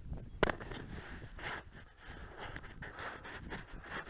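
Close handling noise from a body-worn camera: clothing and fabric rustling and scuffing against it, with one sharp click about half a second in.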